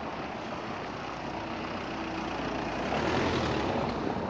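A car driving toward the listener over a cobblestone street and passing close. The rumble of its tyres on the cobbles and its engine grow steadily louder, loudest about three seconds in.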